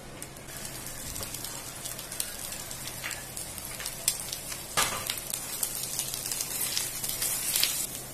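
Eggs and chopped vegetables sizzling in hot oil in a nonstick frying pan, a steady hiss with many small crackling pops that get busier after the first second. One sharper click stands out just before the five-second mark.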